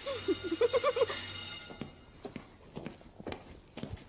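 Electric hand dryer blowing with a steady high whine for about two seconds, then stopping; a few soft knocks follow.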